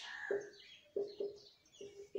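Marker pen squeaking on a whiteboard while writing: a series of short squeaks of the same pitch at irregular intervals, with faint scratching between them.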